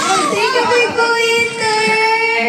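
A young woman singing into a handheld microphone, sliding into one long held note that lasts over a second.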